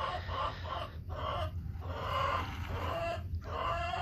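Chickens clucking in short runs of calls with brief pauses between.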